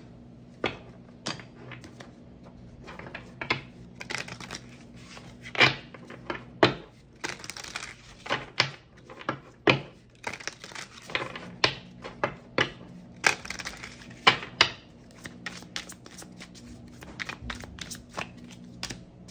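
A deck of cards being shuffled by hand: irregular quick snaps and slaps of the cards with short papery swishes, busiest through the middle.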